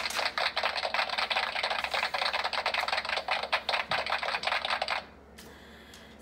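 Applause: a dense patter of many hand claps that cuts off suddenly about five seconds in.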